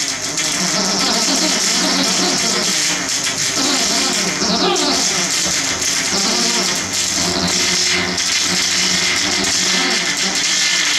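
Loud live industrial electro-punk music: an acoustic drum kit with a heavy cymbal wash played together with keyboard and electronic sounds, with a falling sweep about halfway through.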